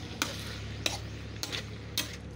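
Long metal ladle scraping and clinking against a large steel wok while stir-frying snails in their shells, four sharp strokes about half a second apart.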